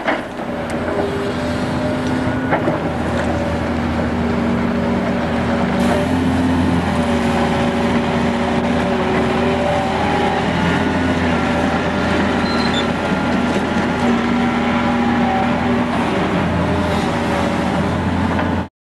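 Sumitomo SH300 30-ton excavator's diesel engine running steadily under hydraulic load while grading soil, its tones shifting slightly in pitch as the hydraulics work. A couple of sharp knocks come in the first few seconds.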